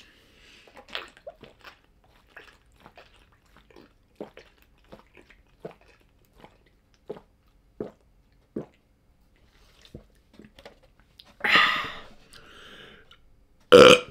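A person gulping a drink straight from a carton, with short swallows roughly every 0.7 s, followed by louder breathy sounds near the end.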